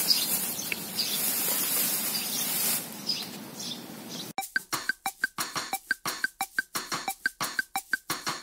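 Plastic bag crinkling as potted water lilies are handled and lifted out of it. About four seconds in, the sound cuts abruptly to light background music of short, quick repeated notes, about three or four a second.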